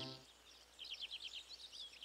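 Faint chirping of small birds, quick runs of short high notes, starting about a second in, after background music fades out at the very start.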